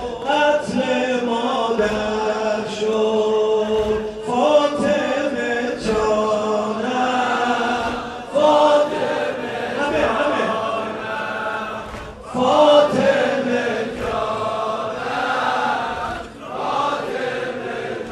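A group of men chanting a mourning lament together, in repeated phrases that start about every four seconds, each opening loudly and then tailing off.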